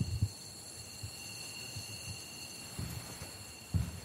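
Quiet background ambience: a faint steady hiss with thin high whining tones and a few soft low bumps.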